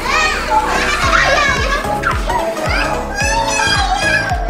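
Young children's voices over background pop music, whose steady low drum beat comes in about a second in.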